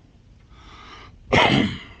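A man draws a faint breath in, then coughs once, sharply, about a second and a half in.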